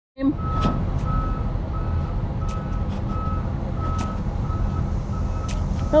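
Vehicle backup alarm beeping a single steady tone about every 0.7 seconds over a low engine rumble, with a few sharp knocks.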